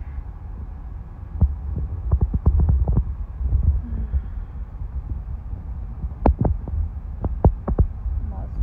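Low, steady rumble of a car driving slowly, heard inside the cabin, with two clusters of short sharp knocks and thumps, the first about a second and a half in and the second around six seconds in.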